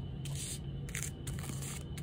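Faint, brief rustles and scrapes of tarot cards being handled as the next card is drawn, over a steady low hum.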